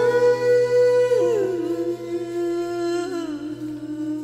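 Music: a wordless female vocal holds long notes, gliding down in pitch about a second in and again about three seconds in, over a sustained backing.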